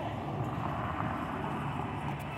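A car passing close by, its tyre and engine noise swelling and then easing, over a low steady rumble.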